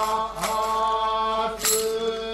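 Enburi festival accompaniment: voices holding long, drawn-out chanted notes that slide between pitches, with a sharp strike about every second and a quarter.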